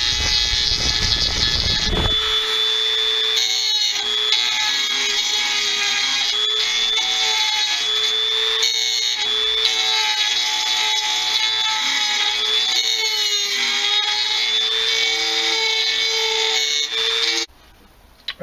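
Dremel rotary tool with a carbide burr running at high speed, a steady high whine, grinding down the high spots of a weld bead on a dirt bike engine case half. The pitch sags slightly now and then as the burr bites, and the tool switches off near the end.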